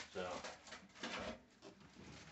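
A clear plastic parts bag crinkling and rustling as it is handled, in short bursts between a few words.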